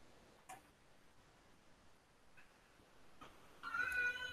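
Mostly near-silent room tone with a few faint clicks, then near the end a faint, short, high-pitched call at a steady pitch.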